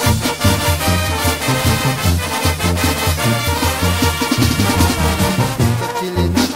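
Brass band playing an instrumental passage of a chilena: brass over a low bass line that marks a steady, lively beat.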